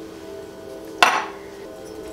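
A measuring cup knocked once against a glass mixing bowl, about a second in, to shake loose packed brown sugar.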